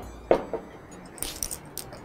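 Dishes being moved and set down on a kitchen counter: one knock shortly after the start, then a few light clinks about halfway through.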